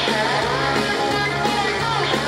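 Live hard rock band playing loud, with electric guitars up front over bass and drums, heard from the crowd.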